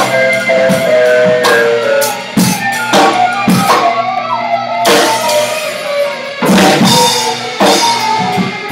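Live free-improv jazz-funk from a trio of electric cello, Moog synthesizer and keyboards, and drum kit. Irregular drum hits sound under shifting held notes from the cello and synth.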